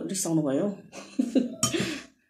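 A woman talking, her voice rising and falling, with a short rough burst near the end that is like a cough.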